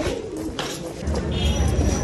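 Bird calls over outdoor background, with a low rumble on the microphone starting about a second in.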